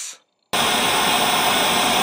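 Television static: a steady hiss of white noise that starts abruptly about half a second in, after a short silence.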